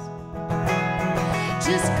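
Live band music: acoustic guitar strummed with an electric guitar. The music dips briefly at the start, then the strumming comes back in. A singing voice re-enters just at the end.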